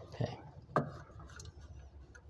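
A single sharp metallic click a little under a second in, with faint handling noise, as the compression tester's hose fitting is worked loose from the spark plug hole.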